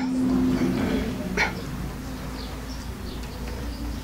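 A man's voice holding a long, steady note at the end of a verse of Quran recitation through a PA system. The note is strongest in the first second and then fades to a faint hum, with one short click about a second and a half in.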